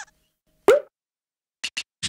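A cartoon sound effect: a single short pop with a quick pitch sweep about two-thirds of a second in, then two quick light clicks near the end.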